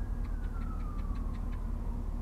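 Car engine idling at a standstill, a steady low rumble. Over it, a single thin high whine slowly falls in pitch, with faint rapid ticking in the first second or so.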